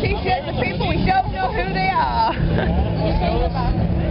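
Close voices of a small group talking and chanting, with crowd babble behind them and a steady low rumble underneath.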